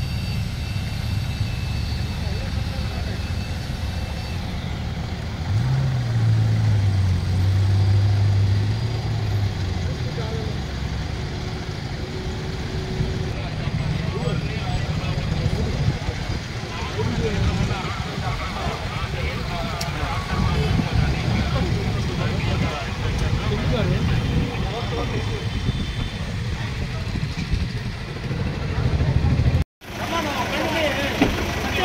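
SUVs of a police convoy driving past on a road, engines running with a steady low rumble. A louder low engine drone rises and holds for about four seconds, starting about five seconds in.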